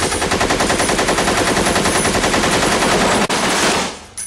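A rapid burst of automatic gunfire, very fast evenly spaced shots, loud and sustained; it breaks off a little past three seconds in, resumes briefly and stops just before the end.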